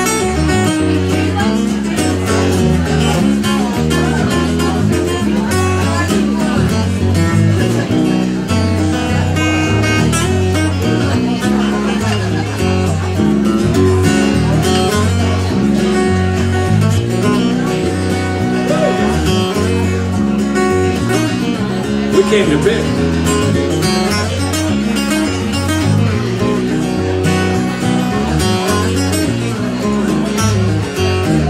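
Solo steel-string acoustic guitar playing an instrumental passage: picked notes over a steady, regular bass line, with no singing.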